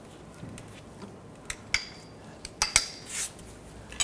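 A handful of light metallic clinks, a couple of them ringing briefly, and a short scrape, from a screw jack being lowered away from an engine's oil pan.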